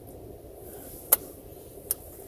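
Two sharp clicks of cutlery against a food dish, one about a second in and a quieter one just before the end, over a faint steady hum.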